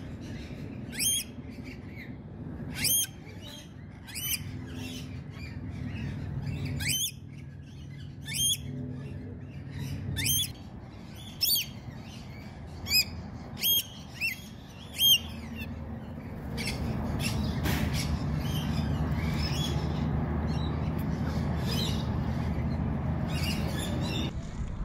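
Rainbow lorikeets giving short, shrill screeches, about a dozen of them roughly a second apart. After about sixteen seconds the calls stop and a steady low rumble takes over.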